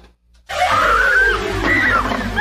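One spoken word, then loud film audio cuts in abruptly about half a second in: music with a long, steadily falling tone and several short rising-and-falling cries over it.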